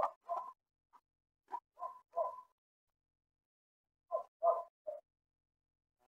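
A series of short animal calls in three quick groups: two, then three, then three.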